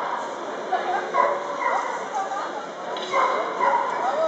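Dogs yipping and whining in short high calls over the murmur of a crowd talking in a large hall.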